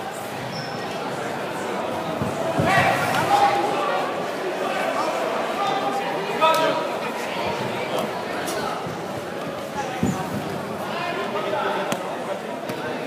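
Indistinct voices and calls echoing in a large sports hall, with a few short dull thumps on the mats scattered through.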